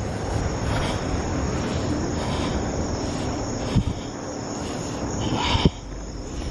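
Crickets calling steadily, a constant high trill over a low background rumble, with two short thumps about four and five and a half seconds in.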